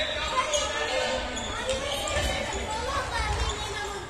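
A handball bouncing on a sports-hall floor as it is dribbled, with voices calling out, all echoing in the large hall.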